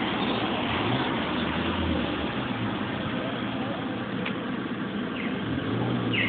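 Steady street traffic noise, with the low hum of a vehicle engine underneath.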